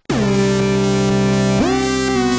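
Glitchy electronic music: a loud, sustained synthesizer chord that cuts in abruptly with its pitch bending down, holds, then slides up into a new chord about one and a half seconds in.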